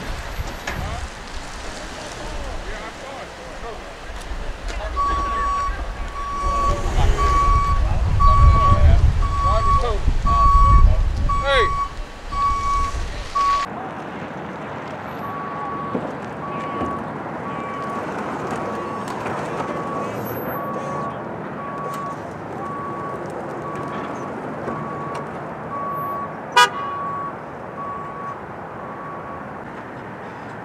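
A snowplow dump truck's reverse alarm beeping steadily, a little over once a second, as the truck backs up; it breaks off briefly partway through. Wind rumbles on the microphone through the first half, and a single sharp click comes near the end.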